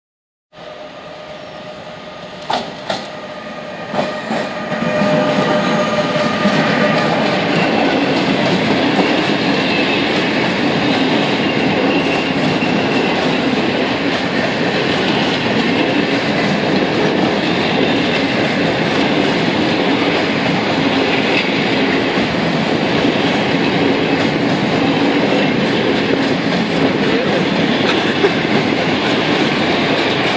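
Bombardier TRAXX electric freight locomotive (Lotos E186 276-2) drawing near, with a few sharp knocks, then passing close by with a long train of covered bulk wagons, their wheels rumbling and clattering over the rails. Loud and steady from about five seconds in.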